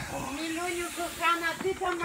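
A person's voice making drawn-out, wordless vocal sounds, over a steady high hiss.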